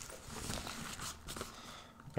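Faint rustling and a few light knocks as a soft-sided zippered carrying case is opened and the papers and gear inside are handled.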